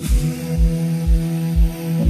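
Instrumental stretch of an electronic dance track: a kick drum on every beat, about two a second, under sustained synth chords that change at the start, with no vocals.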